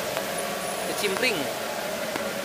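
Steady hiss from a gas-fired wok burner and its pan of hot frying oil, with a short spoken word about a second in.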